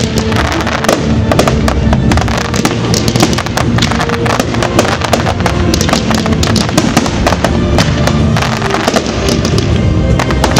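Fireworks display firing continuously: a dense run of rapid bangs and crackles from launching comets and bursting shells. Music with long held notes plays underneath the pyrotechnics.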